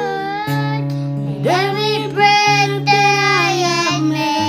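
A child singing a slow, drawn-out melody over sustained acoustic guitar chords.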